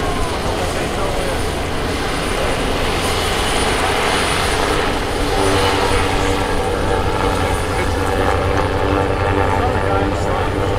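The piston engines and propellers of the Goodyear airship Wingfoot Three, a Zeppelin NT, droning steadily as it flies low overhead, growing slightly louder about halfway through.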